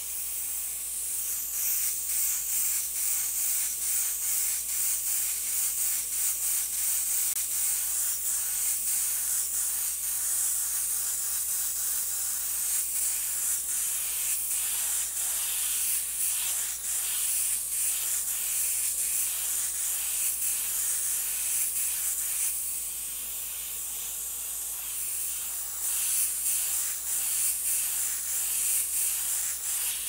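Iwata HP-CS Eclipse airbrush hissing as it sprays paint at low pressure, the air coming in many short pulses as the trigger is worked, easing off for a few seconds about two-thirds in.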